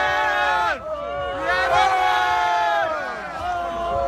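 A crowd of spectators yelling and shouting together in long, overlapping cries. The cries slide down in pitch and break off twice: just under a second in, and again near the end.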